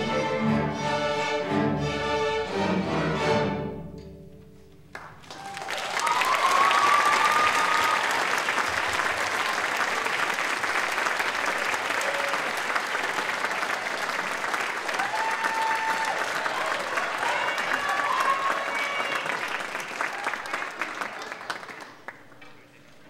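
A string orchestra plays its closing chords, which die away about four seconds in. The audience then breaks into applause, with a few cheers, lasting until just before the end.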